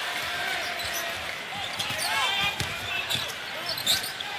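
A basketball being dribbled on a hardwood court over steady arena crowd noise, with a few short knocks.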